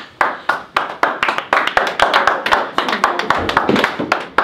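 A group of people clapping and slapping hands as a team gathers into a huddle: many sharp, irregular claps, several a second.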